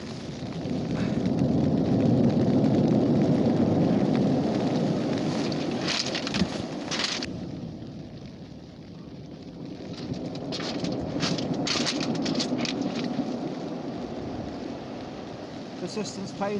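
Waves breaking on a shingle storm beach, a heavy rushing noise that swells, dies down halfway through and swells again. Crunching rattles of pebbles come in short clusters in the middle and again later.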